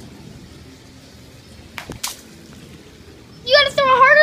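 Quiet background with two short clicks a little before halfway, then near the end a young girl's loud, high-pitched cry.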